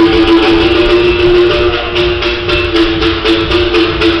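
Berimbau played with a stick and caxixi rattle: a steady wire tone with quick, regular strokes, accompanied by an atabaque hand drum.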